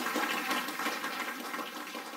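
A steady, even rushing noise that fades away gradually.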